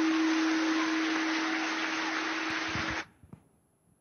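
Audience applauding in a hall over a steady low hum, cut off suddenly about three seconds in, then near silence.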